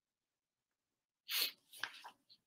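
Over a second of dead silence, then a short, sharp breath noise from a man, followed by a faint click.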